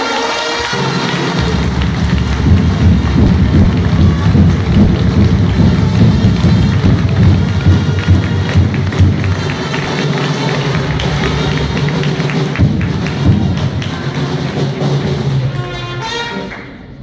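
Audience applauding in a hall, clapping throughout, over loud music with a deep bass line that shifts note every few seconds.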